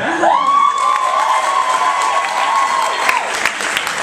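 A single voice holding one long high note, sliding up at the start, held for about three seconds and then falling away, over a crowd cheering and clapping.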